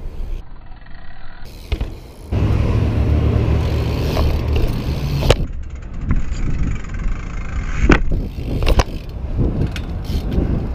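BMX bike rolling on concrete, a heavy low rumble of tyres and frame close to the camera that sets in a couple of seconds in. A few sharp knocks come from the bike hitting the pavement, the strongest around the middle and near the end.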